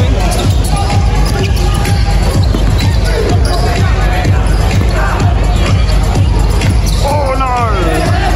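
Music with a steady beat over a live basketball game, with a basketball bouncing on the hardwood court and crowd voices in the hall.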